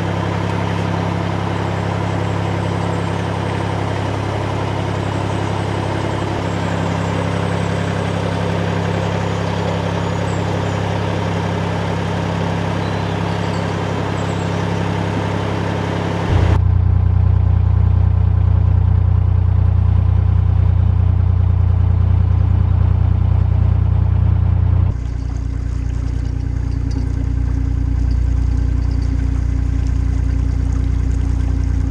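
Narrowboat's diesel engine running steadily at low cruising revs, with an even beat. About halfway in the sound jumps abruptly to a louder, deeper rumble, then drops back a little some eight seconds later.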